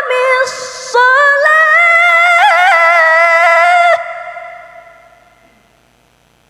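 Melodic Quran recitation (tilawah): a single high voice holds a long, ornamented phrase after a brief breath near the start, then stops about four seconds in. The hall's echo fades away over the next two seconds into a faint low hum.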